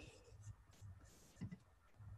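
Near silence: faint room tone with a soft rustle a little after one second in.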